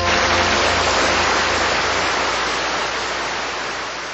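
A song's last sustained chord has just stopped, leaving a loud, even hiss-like wash of noise with no tune in it, which fades away gradually over several seconds.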